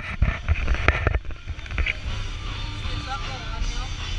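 Pirate-ship swing ride in motion: a low rumble of rushing air on the microphone, with a quick run of knocks and rattles in the first second.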